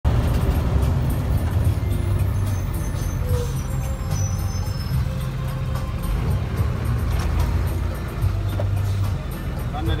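A bus engine running with a steady low rumble, with music and voices mixed over it.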